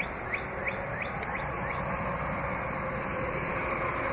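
Steady outdoor background hum, with a few short high chirps in the first second and a half.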